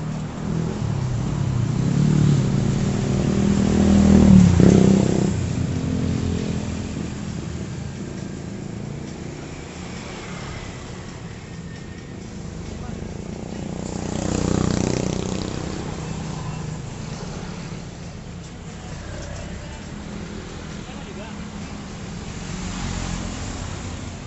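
Road traffic passing close by: cars and motorcycles driving past, with the loudest pass about four seconds in, another around the middle, and a smaller one near the end.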